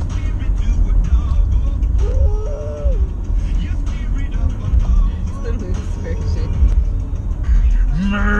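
Road noise inside a moving car: a loud, steady low rumble from the tyres and engine.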